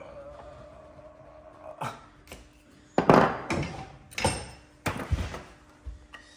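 A series of sharp wooden knocks and thunks, the loudest about three seconds in, as the pieces of a timber mortice-and-tenon joint are worked apart and set down on a wooden workbench.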